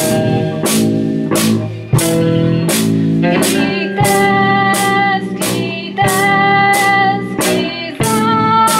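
Live rock band playing: electric guitar chords over a steady drum beat, with a strike about every two-thirds of a second. Long held notes join over the top about halfway through.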